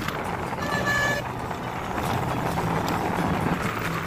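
Road and wind noise from a moving vehicle with a steady low engine hum, and a short horn toot about a second in.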